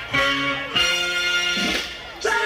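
DJ set music played from vinyl turntables, a track with plucked guitar, with the record worked by hand so the pitch bends and dips.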